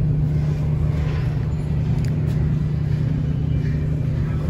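A steady low hum under a constant rush of background noise, with no distinct events.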